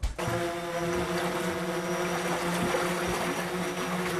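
Outboard motor of an inflatable rescue boat running steadily at low speed, with water splashing as people wade through shallow floodwater pushing the boat.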